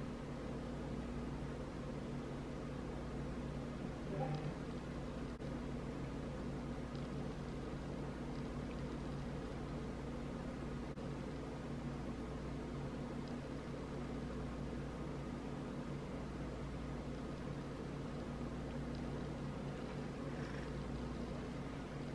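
Steady low hum of room tone, with a faint brief sound about four seconds in.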